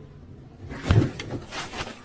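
A run of knocks and thuds, the loudest about a second in and smaller ones after it, as a man standing in the bed of a cargo tricycle falls over onto it.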